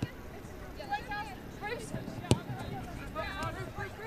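Players calling out on a football pitch, faint and distant. A little past halfway comes a single sharp knock of a football being kicked.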